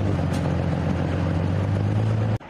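A light amphibious tank's engine running steadily, a low even hum with no change in pitch.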